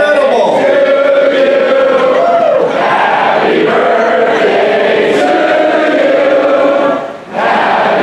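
A large rally crowd chanting in unison, many voices drawing out long, held syllables that rise and fall in a repeating pattern. The chant breaks off briefly about seven seconds in, then resumes.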